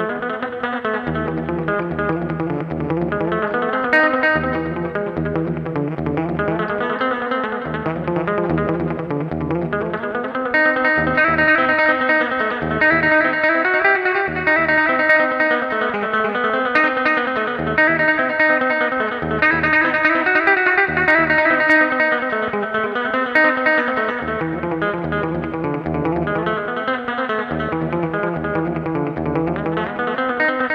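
An Epiphone Sheraton II semi-hollowbody electric guitar is flat-picked through delay and reverb pedals and a Roland Cube amp, making a layered wall of sound over pulsing low notes. It grows fuller and louder about ten seconds in, then eases back after about twenty-four seconds.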